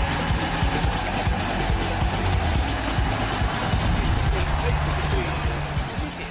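Up-tempo television sports theme music playing over the opening titles, with a steady driving beat and bass line.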